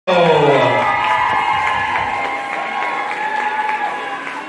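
Audience cheering and clapping, with many voices shouting and a falling whoop at the start, the noise slowly dying down.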